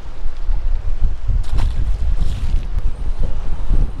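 Strong wind buffeting the microphone: a loud, gusty low rumble that swells and eases, with a few faint ticks.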